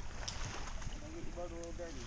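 Wind buffeting the microphone as a low, uneven rumble, with a short drawn-out voice call from one of the people about a second and a half in.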